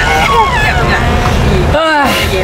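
Low, steady rumble of an old van's engine and road noise, heard from inside its cabin under loud conversation.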